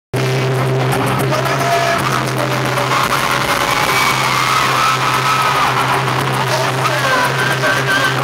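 Loud concert intro music over an arena PA, built on a steady low drone, with the crowd screaming in high wavering cries over it.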